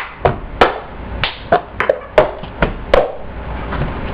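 Cup song being played: hand claps and a plastic cup tapped and knocked on a countertop, about eight sharp hits in an uneven rhythm that stops about three seconds in.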